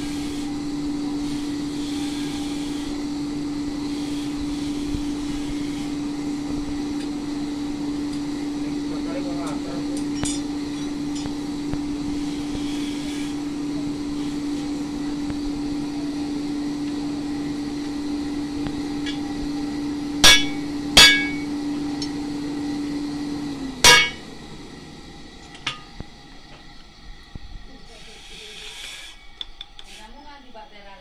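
A forge's air blower hums steadily, then stops a little after two-thirds of the way through, which lowers the overall sound. Three sharp metallic clinks come in quick succession around that point, the last one as the hum stops.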